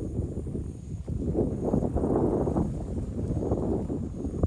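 Thunder rumbling low and continuously, swelling a little after a second in and easing off toward the end.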